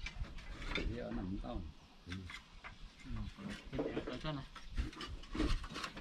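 Thick fired-clay roof tiles clinking and knocking against one another and against wooden battens as they are lifted from a stack and laid, in short irregular clicks.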